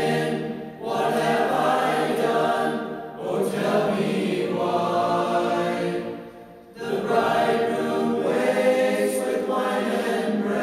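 A choir singing in long held phrases, with short pauses between them about every three seconds.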